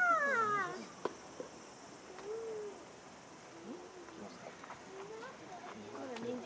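A single high-pitched voice cries out at the start, its pitch rising then falling over under a second. Only faint, scattered voices follow.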